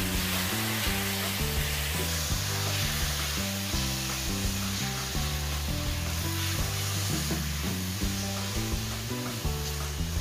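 Chicken pieces sizzling in hot oil in a stainless steel pan as they are stirred with a silicone spatula, browning. Background music with a bass line plays underneath.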